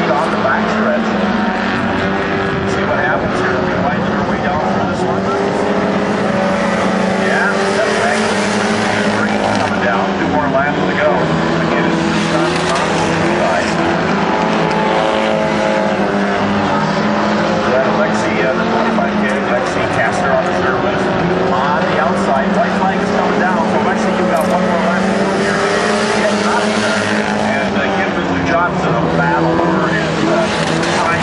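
Hornet-class dirt-track cars racing on the oval. Their small engines rev up and down continuously as they lap, with several engine pitches overlapping.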